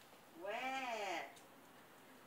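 A dog gives one drawn-out yelping call, rising and then falling in pitch, about half a second in and lasting under a second.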